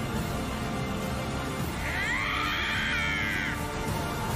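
Dramatic anime film-trailer music with a dense, steady low rumble. About two seconds in, a high, wavering cry or screech rises over it and lasts about a second and a half.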